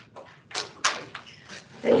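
A few short, sharp noises on a meeting microphone, such as clicks, breaths or small knocks, then a person starts to speak near the end.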